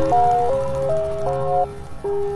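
Instrumental chillout music: a simple melody of clean, held notes stepping up and down about every half second over a steady sustained lower note.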